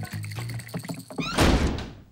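Cartoon background music, then about a second and a half in a short rising swish and a heavy thud that rings out and fades, a scene-change sound effect.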